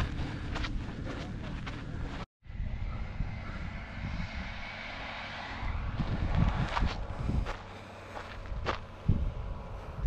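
Wind rumbling and buffeting on the microphone on an exposed volcanic slope, with a few footsteps crunching on loose cinder. The sound breaks off briefly about two seconds in.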